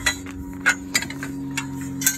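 A series of light metallic clicks and clinks, about seven in two seconds, as metal trailer parts such as the bed support poles and pins are handled, over a steady low hum.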